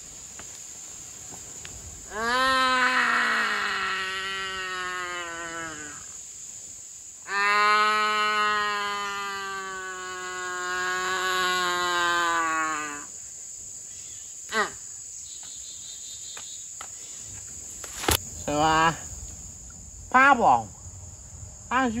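A voice holding two long, slightly falling notes, the first about two seconds in and the second, longer one about seven seconds in, followed by a few short vocal sounds near the end. Insects buzz steadily underneath throughout.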